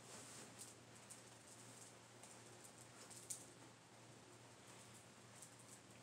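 Near silence: faint room tone with a low steady hum and a few soft ticks, one a little louder about three seconds in.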